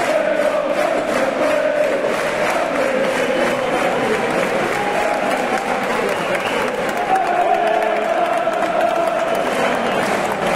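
Football supporters in the stands chanting a song in unison, with scattered clapping. The chant rises and falls in pitch.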